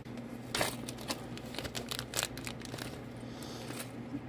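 Small clear plastic parts bag crinkling and rustling as fingers work through it, with scattered light clicks.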